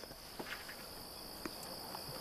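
Crickets trilling in one steady high-pitched tone, with a few faint ticks.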